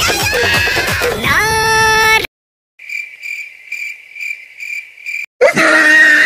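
Electronic intro music ends on a held chord, then after a short silence crickets chirp: a steady high trill pulsing about three times a second. Near the end loud laughter cuts in.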